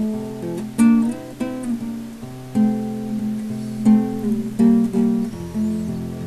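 Acoustic guitar strumming chords in an instrumental passage of a song, a new chord struck every second or so and ringing on between strokes.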